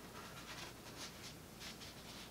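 Cardboard disc sleeves and a printed card being handled: a series of faint, short paper-on-card scrapes and rustles.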